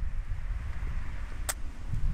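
Wind buffeting the microphone as a low, uneven rumble, with a single sharp click about one and a half seconds in.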